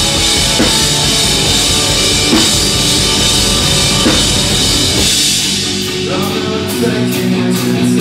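Heavy band playing live at full volume: distorted guitar, bass and drums. About five seconds in, the bottom end drops away, leaving guitar over evenly spaced drum strokes, about three a second.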